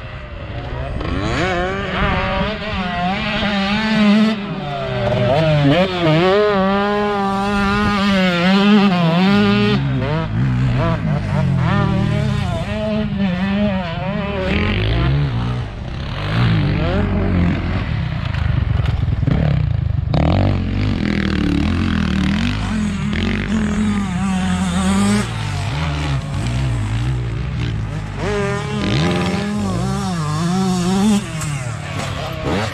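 Motocross dirt bike engines revving on the track, the pitch climbing and dropping again and again as the riders work the throttle through jumps and corners, at times with more than one bike heard at once.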